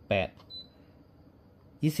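A short high electronic beep from the air purifier's control panel, about half a second in, as the timer setting is stepped up by one press.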